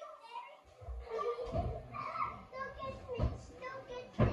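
Indistinct children's voices talking, with a few dull thumps about one and a half, two and three seconds in.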